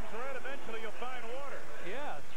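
A man's voice talking: broadcast commentary speech.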